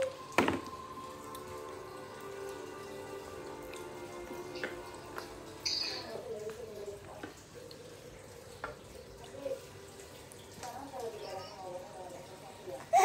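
A sharp knock about half a second in, then a few lighter taps, from a baby handling food on a plastic high-chair tray. In the second half there are soft baby vocal sounds, over a faint steady tone in the background.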